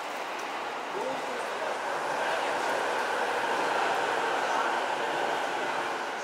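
Electric commuter train pulling into an underground station platform: a steady rush of wheels and motors with a faint whine, echoing off the station walls. It eases off near the end as the train slows.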